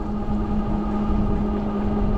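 Ariel Rider Grizzly e-bike's hub motor whining under way, a steady even tone, over low wind rumble and tyre noise from riding at speed.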